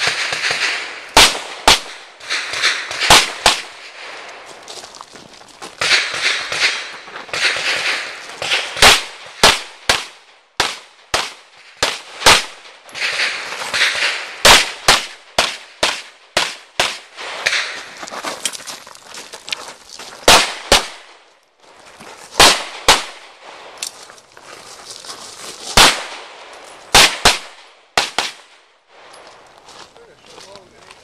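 A pistol fired in quick pairs, some thirty shots in all, with short breaks between strings of fire.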